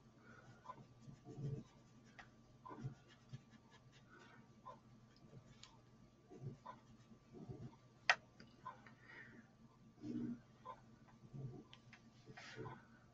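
Faint, irregular scuffing of a sponge applicator rubbing PanPastel onto paper, with scattered small ticks and one sharper click about eight seconds in.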